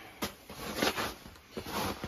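Rustling and handling noises, like a jacket's fabric brushing as someone leans and reaches, with a light click a moment in and several short scrapes.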